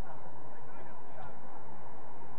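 Steady open-air noise picked up by the camera's microphone, with faint, distant pitched calls over it.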